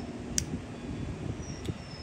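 Low steady outdoor rumble, with a sharp click about half a second in and a fainter click near the end, as a puppy's plastic ID collar is handled and fitted.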